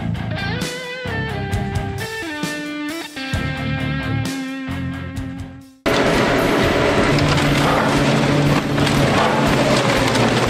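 Rock music with electric guitar, then about six seconds in it cuts off abruptly to a louder, dense, steady grinding noise of an industrial shredder working on a scrap car body.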